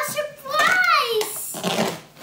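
A child's voice calls out, then for most of the last second comes a rustling, peeling noise of cardboard and packaging as the toy box's front panel is pulled open.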